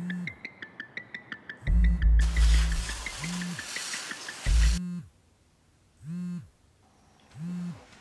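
A mobile phone buzzing with an incoming call, in short low buzzes about every 1.3 seconds, heard on its own in the second half. Before that, music with a fast high ticking beat and a loud low rumble and hiss that cut off suddenly about five seconds in.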